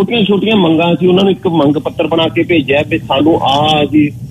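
Speech only: a man talking in Punjabi, his voice thin and cut off at the top as over a telephone line.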